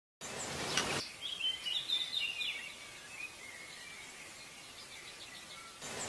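Birds chirping over a steady outdoor hiss, with a cluster of quick, high chirps in the first half that thins out toward the end.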